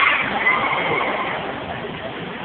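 Faint high-pitched screams from riders at the top of a tall tower thrill ride, heard about half a second to a second in over steady background noise.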